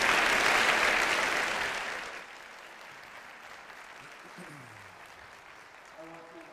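Theatre audience applauding, loud at first and dying away about two seconds in.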